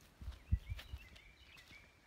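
Quiet outdoor background with several faint, short bird chirps. A few dull, low thumps fall in the first second, the strongest about half a second in.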